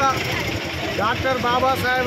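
A man speaking, over steady street and traffic noise.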